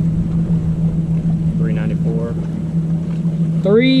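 A small motor on the bass boat humming steadily at one low pitch, with a low rumble beneath it.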